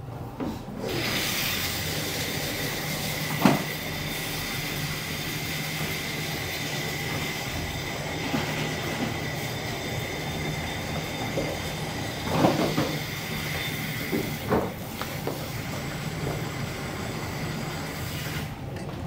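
A small electric blower motor runs steadily with a high whine and a hiss, switching on about a second in and stopping at the end. A few soft knocks come over it.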